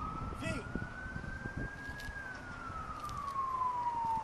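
Siren wailing in a slow cycle: a single tone climbs for about two seconds and then falls away.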